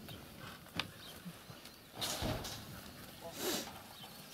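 Sheep jostling at a shed door while being hand-fed: a sharp click about a second in, then short rustles and shuffling, with a brief faint call near the end.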